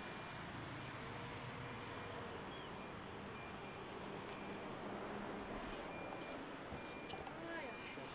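Low, steady hum of a car driving slowly through city traffic, road and engine noise without any sudden events.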